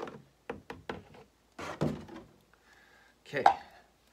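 Mostly a man's voice, ending with "okay" near the end. Between the words there are light knocks of a plastic bottle and jug being handled while liquid latex is poured.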